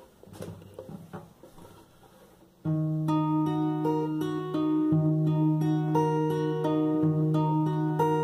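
Acoustic guitar fingerpicking an E flat minor arpeggio: the thumb takes a bass note on the fifth string while the fingers pick the third, second and first strings, and the notes ring over one another. The picking starts suddenly about two and a half seconds in, after a few faint handling clicks.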